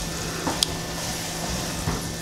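Wooden spoon stirring a thick mix of melting cheese, beans and corn in a pot on the stove, over a steady sizzle from the pot.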